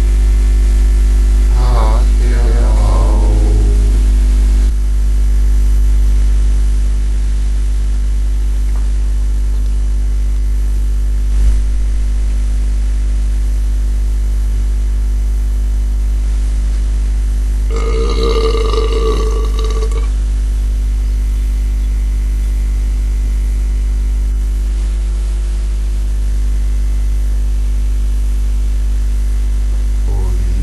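A loud, steady low drone. A wavering, voice-like sound comes over it in the first few seconds, and a rougher voice-like sound lasting about two seconds comes just past the middle.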